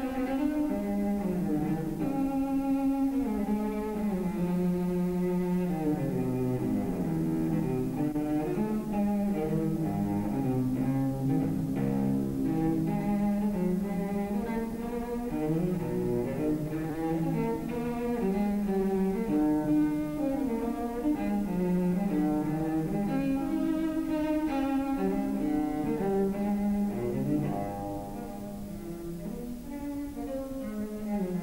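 Instrumental music on bowed strings, a low melodic line in the cello range moving note by note, playing steadily and easing off slightly near the end.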